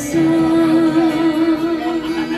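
A woman singing into a microphone, holding one long note with a slight vibrato over backing music.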